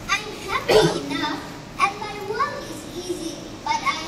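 A child speaking lines into a stage microphone in short phrases with pauses between them.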